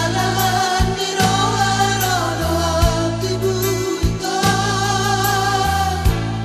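A Batak pop song with sung vocals holding long notes over a band backing with a steady bass line and drum beats.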